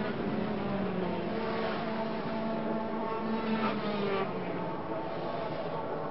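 Several two-stroke 125cc racing motorcycles running hard together at high revs, their engine notes overlapping and shifting in pitch against one another.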